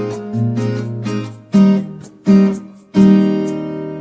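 Background music: acoustic guitar strumming chords, with three sharp strums in the second half, the last chord left to ring.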